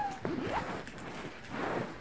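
Rustling of fabric and handling noise from a phone being moved about, with a short rising vocal sound about half a second in.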